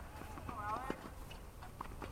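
Sharp knocks of a tennis ball on a hard court, about a second apart, with faint distant voices.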